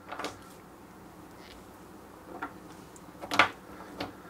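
Wooden Lincoln Logs toy pieces knocking and clicking lightly as they are picked up and set down, a few separate taps with the loudest about three and a half seconds in.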